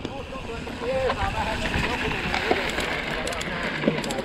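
Mountain bike riding fast down a dirt trail: steady wind rush over the camera mic, with the rumble and rattle of tyres and bike on rough ground. A few sharp ticks come near the end.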